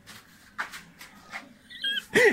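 Rustling and light knocks from a hand-held phone being moved, then near the end a brief, wavering, high-pitched squeaky chirp.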